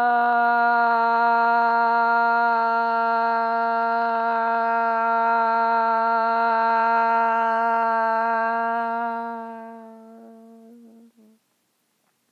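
A voice holding one long hummed note, nearly steady in pitch with a slight downward drift, fading away over its last couple of seconds.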